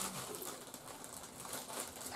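Faint crinkling of a plastic bread bag and soft tearing of bread by hand, with a brief low hum right at the start.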